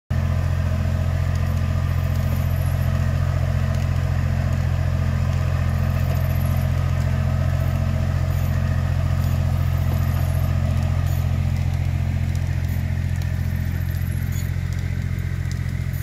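Compact tractor engine running at a steady speed as it pulls a bed-forming plastic-film layer along at a slow walk, a constant low drone.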